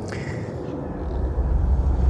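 Rolls-Royce Camargue's 6.75-litre all-aluminium V8 and road noise as the car drives: a steady low rumble that comes in about a second in, after a quieter stretch of faint background noise.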